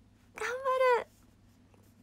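A woman's voice saying one short, high-pitched word, 'ganbaru' ('I'll do my best'), lasting about two-thirds of a second.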